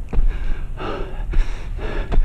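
A hiker panting hard in quick, regular breaths while climbing steep stairs, with footsteps landing on the wooden railway ties between breaths.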